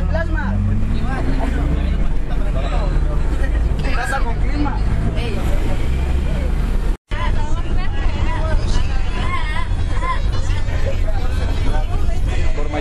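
Passengers chattering over the steady low rumble of a moving coach bus's engine and road noise, with a brief break in the sound about seven seconds in.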